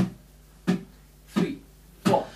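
A count-in at the song's tempo: short, sharp clicks evenly spaced about two-thirds of a second apart, the last landing right at the end.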